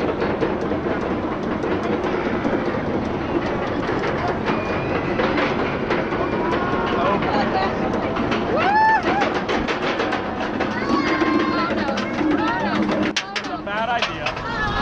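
Roller coaster train climbing the chain lift hill: the lift chain and anti-rollback dogs clicking rapidly and steadily under the train. Riders' voices and a whoop are heard about nine seconds in, and the low rumble drops away shortly before the end as the train reaches the crest.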